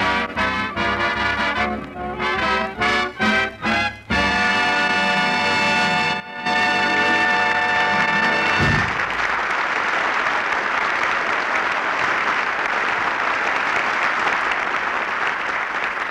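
Swing orchestra with brass playing the closing bars of a number, ending on a long held chord about eight or nine seconds in, followed by studio audience applause.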